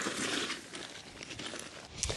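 Kale leaves and a carry bag rustling and crinkling as the leaves are packed into the bag. It is strongest in the first half second, then softer.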